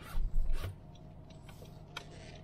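Two brief rustling, rubbing sounds near the start, over the low steady hum of a car moving slowly, heard inside the car's cabin.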